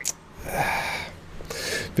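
A man breathing audibly: two breaths, the first about a second long, with a small click just before.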